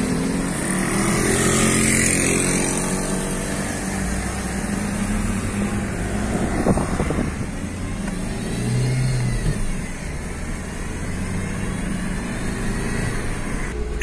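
A car driving, heard from inside its cabin: steady engine and road noise that swells and eases a little as it goes.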